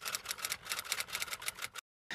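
Typewriter keystroke sound effect: a fast, even run of clicks at about nine a second that stops suddenly near the end. It goes with on-screen title text being typed out letter by letter.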